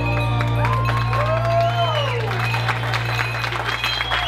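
A slow song's last held chord fading out while guests applaud, the clapping building from about a second in.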